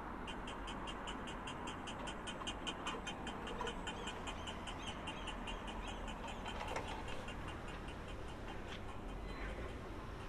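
Accessible pedestrian crossing signal ticking rapidly, about six ticks a second, the fast tick that marks the walk phase; it fades away about eight seconds in. Low street hum underneath.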